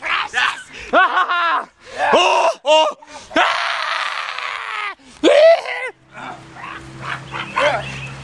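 Young voices yelping, shrieking and laughing in short high calls during rough play-wrestling, with a long harsh scream-like rush about halfway through. A low steady hum comes in near the end.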